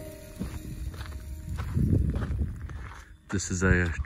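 A few footsteps on dry, gravelly desert ground, with a low rumble under them.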